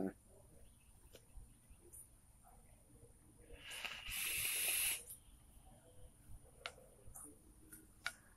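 A long hard draw on a squonk mod with a rebuildable dripping atomizer: air hisses through the atomizer and across the hot coil for about two seconds, starting around three seconds in and cutting off sharply.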